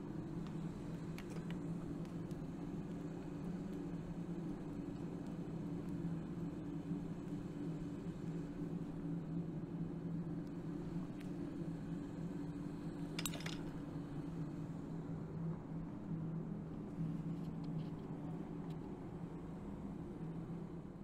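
Steady low hum of a forge blower running, with one short metallic click about two-thirds of the way through.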